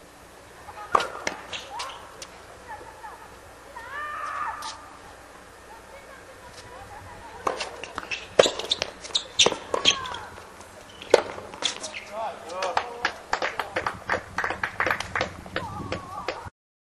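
Tennis ball struck by rackets and bouncing on a hard court during a doubles rally: sharp pops, a couple about a second apart early on, then a quick run of them from about halfway, with short shouts and calls from the players between strikes.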